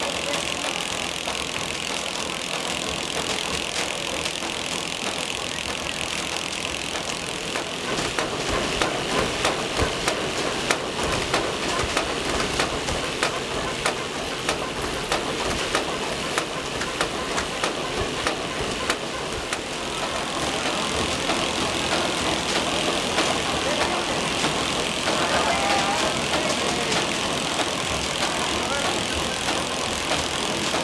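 Vegetable packing line running: the steady mechanical noise of conveyor belts and a roller inspection conveyor carrying bell peppers. From about eight seconds in, frequent light knocks and clatter sound over it for about ten seconds.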